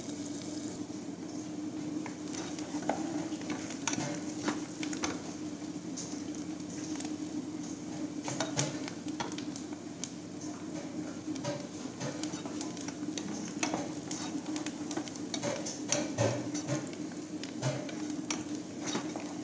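Diced onions sizzling as they sauté in a nonstick pan, with a wooden spoon stirring and knocking against the pan now and then. A steady low hum runs underneath.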